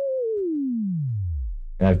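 A self-oscillating resonant filter, Ableton's Auto Filter in an analog-modelled mode with resonance at maximum, pinged by a short noise impulse. It sustains a pure sine tone that glides smoothly down in pitch to a deep low hum as its frequency is swept down.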